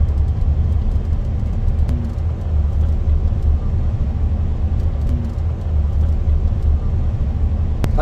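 Steady low rumble inside a car's cabin as it drives slowly on an uncleared, snow-covered street: engine and tyres rolling over the snow.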